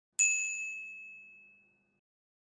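A single bright chime sound effect, struck once about a fifth of a second in and ringing down over about a second and a half. It marks the transition to a new section title card.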